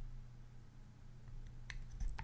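Quiet room with a steady low hum and a few faint, short clicks near the end, the kind of small handling noise made by fingers on a metal tin whistle.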